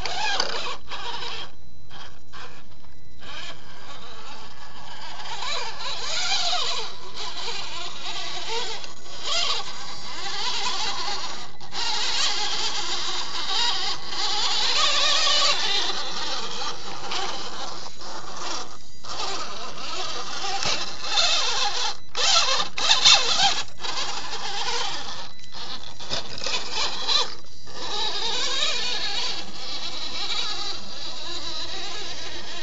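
Electric motor and gears of a scale RC crawler whining as it crawls over rock, the pitch rising and falling with the throttle and cutting out briefly several times when it stops.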